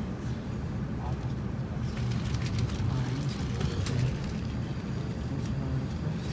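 Steady low rumble of a passenger train running along the track, heard from inside the carriage, with a few faint ticks.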